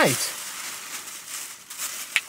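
Thin plastic bag crinkling and rustling as it is handled and folded, a continuous crackly rustle.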